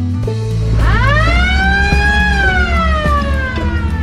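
A police car siren gives a single wail over background music: it winds up quickly about a second in, then winds slowly back down and fades near the end.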